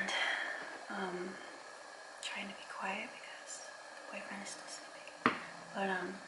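A woman speaking softly in a whisper, in short broken phrases, with one sharp click a little over five seconds in.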